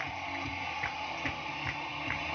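Tambourines tapped in an even rhythm, a light tick about two or three times a second over a soft low beat.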